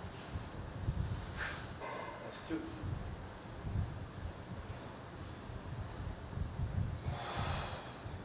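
A man's forceful breaths while flexing hard in poses: a short sharp exhale about a second and a half in, a brief voiced strain just after, and a longer breath near the end, over a low uneven rumble.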